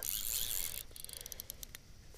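A Ross Evolution LTX fly reel: a short hiss, then a run of quick light clicks as its drag knob is turned a little tighter while a carp is on the line.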